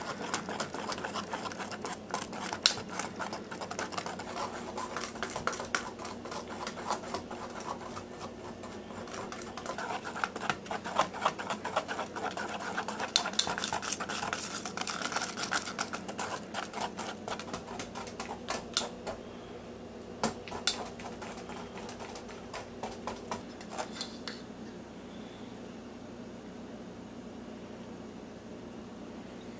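Wire whisk clicking and scraping rapidly against a stainless steel bowl as thick, boiled-down maple syrup, cooled to 175 degrees, is beaten until it lightens for maple candy. The clicking thins out to a few ticks in the last few seconds.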